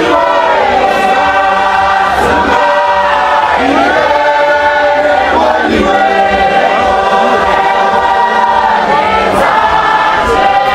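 A large congregation singing a hymn together in many voices, holding long notes at a steady, full level.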